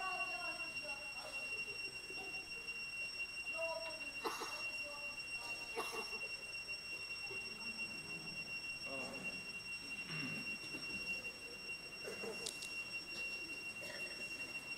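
Faint voices of a congregation praying aloud, with scattered words rising and falling, over a steady high-pitched whine.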